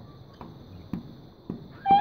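Rose-ringed parakeet giving one short, sharp call near the end, after a couple of faint clicks. A faint, steady high whine runs underneath.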